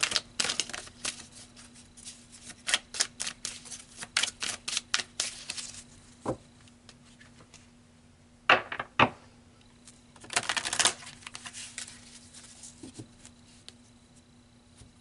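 A deck of tarot cards being shuffled by hand, a quick run of card clicks for about six seconds. Then two sharp snaps and a short slide as cards are drawn and laid down on the table.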